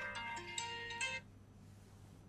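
A tune of clear, steady notes stepping from one pitch to the next that stops abruptly a little over a second in, leaving a faint low hum.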